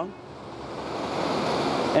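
Ocean surf breaking on the beach: an even rushing that swells steadily louder.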